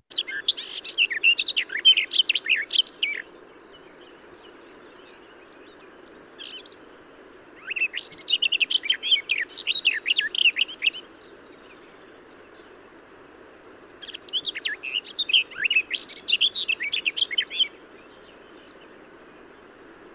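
Recorded garden warbler song: long, rapid, bubbling phrases of varied warbling notes. There are three phrases of about three seconds each, with a short single note in the first gap, over a steady faint background hiss.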